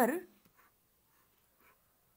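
A woman's spoken word trails off at the start, then a few faint, soft scratches of a stylus drawing on a screen.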